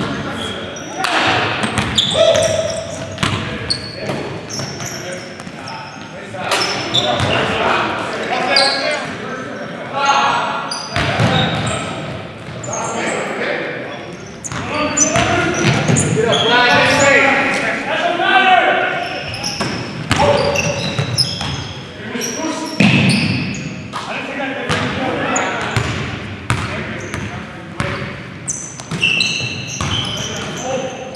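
Live basketball game in a gymnasium: the ball bouncing on the hardwood floor, with short high sneaker squeaks and players calling out to each other.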